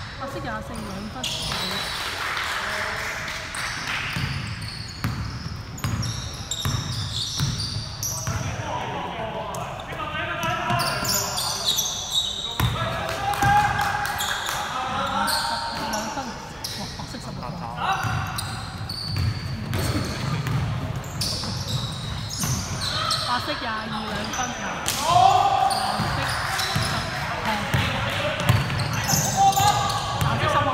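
Basketball game on a wooden gym floor: the ball bouncing as players dribble, with players' voices calling out across the court, echoing in a large hall.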